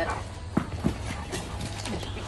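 Several dogs at play over tennis balls on a concrete yard, with two short, sharp sounds close together in the first second.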